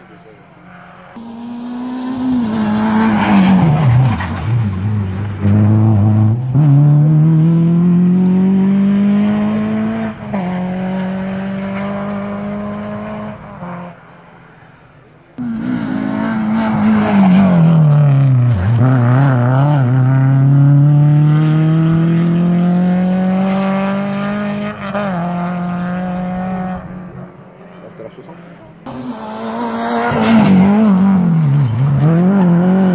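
Rally cars passing one at a time at race speed. Each engine note drops steeply as the car comes by, then climbs through the gears, with an upshift, as it accelerates away and fades. This happens twice, and a third car arrives loud at the very end.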